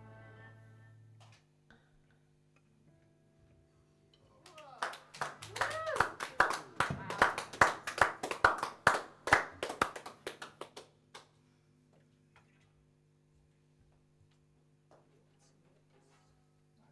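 The band's final chord rings out and dies away about a second in. A few seconds later a small group of people clap, with a cheer, for about six seconds. A faint steady hum from the amplifiers lies underneath.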